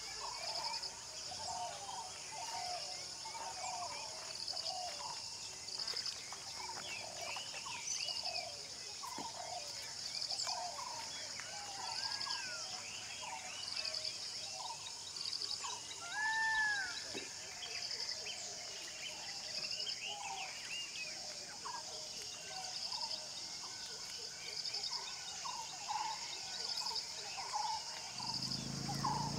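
Natural outdoor ambience: many small birds chirping and calling, over a high insect trill that repeats in short pulses about every second and a half. One louder call rises and falls about halfway through.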